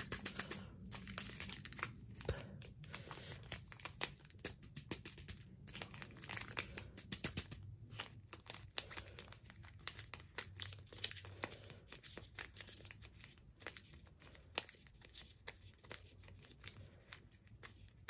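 A small plastic bag of tiny rhinestone nail jewels crinkling as it is squeezed and worked between the fingers, with many small irregular clicks as the jewels are coaxed out into a clear plastic container.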